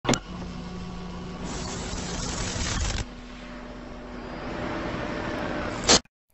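TV-static style intro sound effect: a dense hiss with a steady low hum, opening on a sharp click. It changes abruptly about halfway through and ends on a loud burst of noise.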